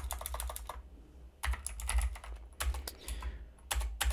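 Computer keyboard typing: quick runs of keystrokes in four short bursts, with brief pauses between.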